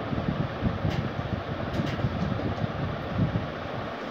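Steady, low rumbling background noise with a few faint scratches from a marker writing on a whiteboard.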